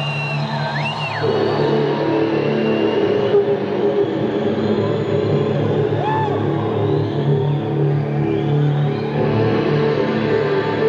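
Live rock band music: held chords and sustained notes, with a few sliding lead notes.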